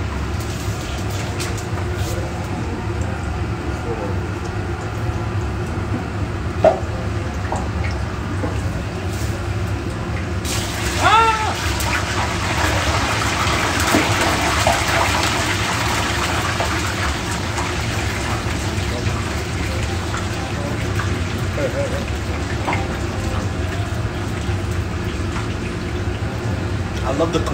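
Chicken wings frying in a commercial deep fryer: the hot oil starts sizzling and bubbling about ten seconds in and keeps going, over a steady low hum of kitchen equipment.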